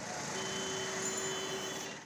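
Street traffic noise, with a steady tone held for about a second and a half through the middle.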